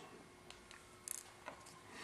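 Near silence: room tone, with a few faint small clicks, the clearest about a second in.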